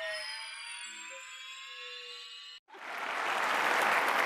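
A musical sting of many slowly rising electronic tones that cuts off suddenly about two and a half seconds in; after a brief gap, studio audience applause starts and builds.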